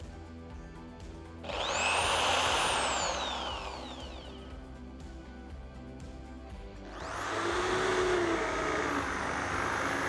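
An electric drill runs briefly about one and a half seconds in, its motor speeding up and winding down. About seven seconds in it starts again and runs steadily at speed as a Forstner bit bores a flat-bottomed cup hole for a concealed hinge in pine, with the hiss of the bit cutting wood beneath the motor whine. Background music plays under the start.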